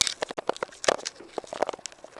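Handling noise from a handheld camera being swung about: a quick, irregular run of clicks, taps and rustles as fingers and movement rub and knock against the camera body near its microphone.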